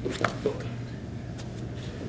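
Wrestlers moving on a foam wrestling mat: a couple of brief soft scuffs in the first half second, then only a steady low hum of the room.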